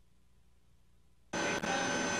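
Near silence with a faint low hum for the first second or so. Then, suddenly, a loud steady hiss with two high steady whines sets in: the fan and equipment noise of the Spacelab module, heard as the crew's downlink audio opens.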